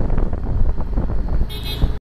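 Auto rickshaw (tuk-tuk) on the move, heard from the cabin: a steady low engine and road rumble with wind on the microphone, and a short horn beep about one and a half seconds in.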